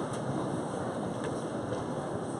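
Steady murmur of a large hall: a seated audience shifting and rustling, with a few faint knocks.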